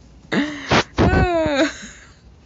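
A woman clearing her throat: two short, rough bursts mixed with voiced sound, about a second long in all.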